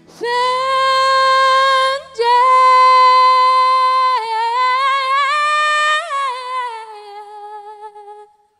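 A woman singing loud, long held notes: two long notes split by a short break about two seconds in, then a wavering line that rises about six seconds in and falls to a softer note with vibrato that trails off near the end. A faint low accompaniment underneath fades out about halfway.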